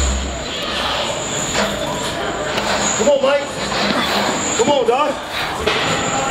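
A person's voice: two short vocal sounds, about three seconds and again about five seconds in, over a steady noisy background.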